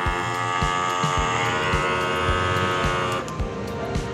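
Small electric motor of a rechargeable water-jug pump running dry, out of the jug, with a steady whine that stops about three seconds in. Background music with a steady beat plays underneath.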